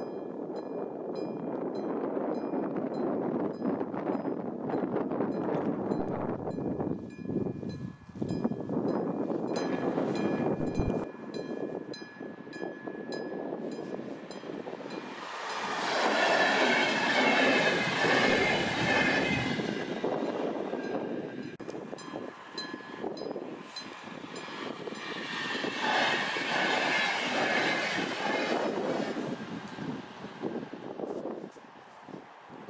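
Two passenger trains pass a level crossing, one about halfway through and another near the end, each a loud rumble and clatter. Under them the crossing's warning bell rings in quick even strokes, about three a second.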